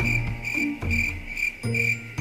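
Crickets chirping in a quick regular pulse, about three chirps a second, over a slow, low tune of a few held notes.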